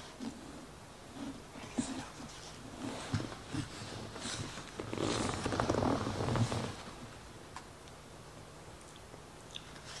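Close-up chewing and mouth sounds of a person eating, with soft clicks, and a louder stretch of handling noise about five seconds in.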